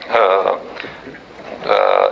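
A man speaking Romanian with hesitation: a short drawn-out vocal filler near the start, a pause, then speech resuming near the end.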